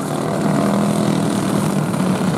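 Racing engines running steadily at a distance, an even engine drone from the field circling the track before the start.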